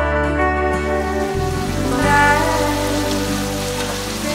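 Steady hiss of pinquito beans sizzling in a skillet, starting about a second in, under background music.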